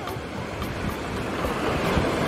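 Small sea waves washing steadily onto a sandy shore, with wind buffeting the microphone.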